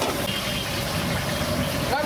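Steady rumbling, engine-like background noise with a hiss over it and a brief high tone about a third of a second in.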